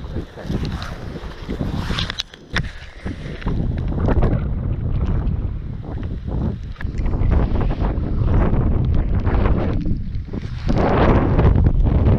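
Wind buffeting the microphone in a heavy low rumble that grows stronger toward the end. In the first few seconds there are rustles and knocks from waterproof clothing and a landing net being handled.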